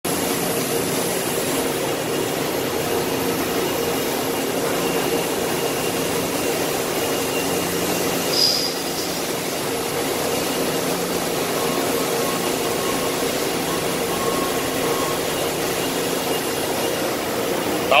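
Makino A88 horizontal machining center's spindle running steadily in its warm-up program at about 1000 rpm: a constant mechanical hum with a thin high whine over it. A brief high squeak comes about halfway through.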